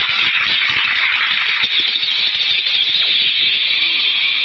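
Studio audience applauding: many hands clapping in a steady, dense patter.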